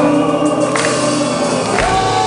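Live metal band playing with sustained, choir-like clean vocals over a held chord, amplified through a venue PA. Heavier drums and bass come in near the end.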